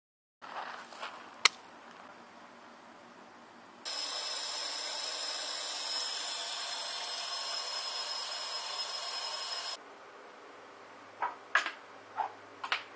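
Tap water running steadily through a homemade PVC compression-coupling activated-carbon filter and splashing into a sink, starting about four seconds in and stopping abruptly near ten seconds. Several short clicks of the plastic filter being handled near the end.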